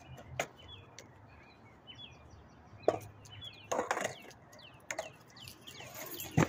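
Small birds chirping over and over, with a few sharp knocks on concrete from a skateboard out of view. The loudest knock comes about three seconds in, and a quick cluster follows a second later.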